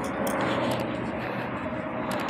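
Steady, even wash of distant engine noise in open air.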